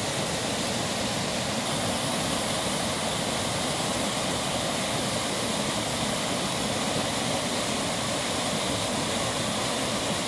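Small waterfall on a brook pouring over rocks into a shallow pool: a steady, even rush of falling water.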